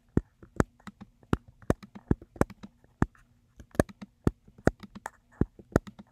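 Computer keyboard key clicks, loud and irregular, a few per second, as letters are typed one keystroke at a time.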